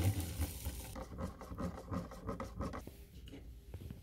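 Hot coffee poured from a glass Mr. Coffee carafe into a paper cup, an irregular splashing trickle that dies down about three seconds in, followed by a few light clicks.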